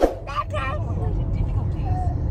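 Steady low road rumble inside a moving car's cabin, starting suddenly, with a couple of short high voice sounds about half a second in.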